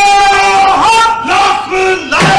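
Loud, drawn-out vocal notes, each held about a second with brief breaks and small pitch slides between them.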